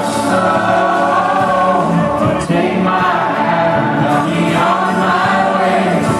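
Live music: a man singing a slow folk-rock song with acoustic guitar accompaniment, recorded from the audience.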